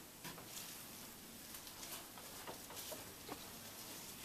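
Faint rustling of flower stems and foliage being handled, with scattered light clicks, as cut dahlia stems are threaded into an arrangement.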